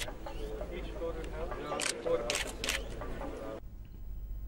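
A few camera shutter clicks around the middle, over a murmur of voices; the sound drops away near the end.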